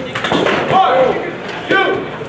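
A few quick sharp knocks of contact between armoured longsword fencers fighting at close range, followed by loud, high-pitched shouting voices.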